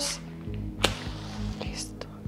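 Slow, low pulsing background music with a single sharp click a little under a second in.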